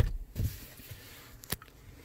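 Car glove box lid pushed shut with a thump as it latches, followed by a lighter knock and a single small click about a second and a half in.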